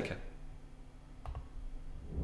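Quiet room hum with a faint double click from a computer a little after a second in.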